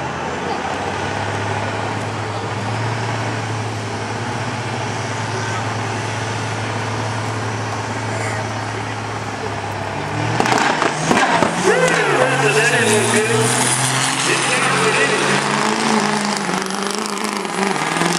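Duramax diesel pickup engine with nitrous holding a steady low drone on the starting line. About ten seconds in it launches with a sudden sharp bang, the nitrous backfire, then pulls hard, its note climbing and stepping back down through the gear changes.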